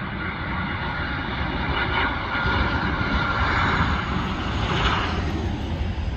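Boeing 737-700's CFM56-7B turbofan engines on final approach: a steady multi-tone whine over a low rumble, growing louder through the first few seconds as the jet comes closer.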